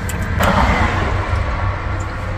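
Low, steady rumble of an idling diesel truck engine. A louder, even rushing noise joins it about half a second in.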